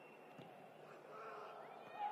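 Faint, quiet ambience of an empty stadium: a light thud as a football is struck from a corner, with faint distant calls from players.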